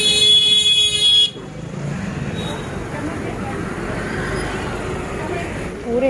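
A vehicle horn honks once for just over a second and cuts off sharply, then steady street traffic noise continues.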